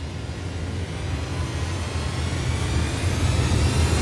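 Trailer sound-design riser: a deep steady drone under a rushing noise that swells steadily louder.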